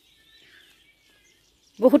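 Quiet outdoor air with a few faint bird chirps, then a voice starts speaking just before the end.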